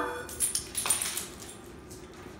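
Light metallic jingling, like a dog's collar tags, as the dog moves, in short clusters about half a second and a second in, then fading.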